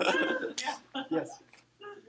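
Voices in a lecture room trailing off after laughter, with a short cough about half a second in, then only a faint, distant voice near the end.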